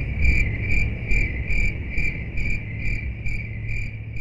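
Insect chirping, steady and rhythmic, with about two and a half short high chirps a second over a low steady hum. It grows gradually fainter.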